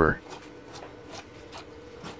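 Paintbrush bristles sweeping over a Samsung LED TV's power supply circuit board: a quick, irregular series of light scratchy strokes.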